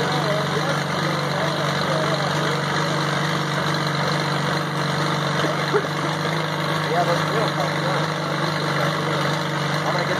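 Caterpillar RD4 bulldozer's four-cylinder diesel engine idling steadily, running after its first start in 20 years.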